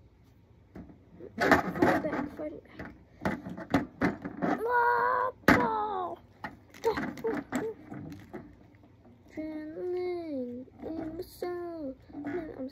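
A voice making wordless exclamations and drawn-out calls that bend up and down in pitch, mixed with sharp knocks and thuds of plastic wrestling figures striking a toy wrestling ring.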